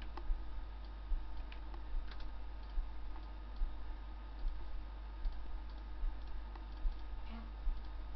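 Regular faint ticking, a little more than one tick a second, over a steady low electrical hum.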